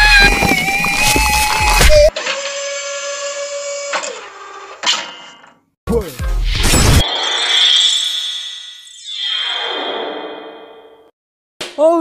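Cartoon sound effects and music: a held scream over a heavy low rumble that cuts off about two seconds in, then a steady held tone, a short loud burst about six seconds in, and a long falling glide that fades away.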